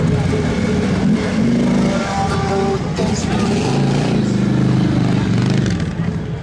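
Harley-Davidson motorcycles' V-twin engines running as the bikes ride slowly past, with people's voices mixed in.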